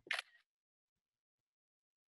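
Near silence: a brief clipped sound at the very start, then dead silence.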